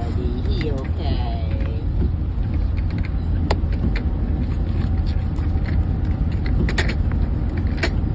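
Steady low road rumble of a moving car heard from inside the cabin, with a brief wavering vocal sound in the first two seconds and a few sharp clicks later on.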